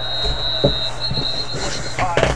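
Referee's whistle blowing a play dead in a televised American football game: one long, high, steady blast with a brief break near the middle, over the broadcast's background noise.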